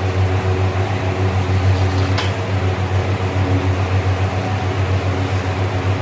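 Steady, loud low electric hum of a running fan motor, pulsing slightly, with a faint click about two seconds in.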